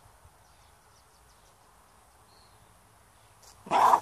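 Faint outdoor background, then near the end a sudden short, loud bark-like cry.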